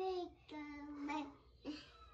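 A toddler's voice singing in a sing-song way, with drawn-out wordless notes: a longer phrase about half a second in, then a short note near the end.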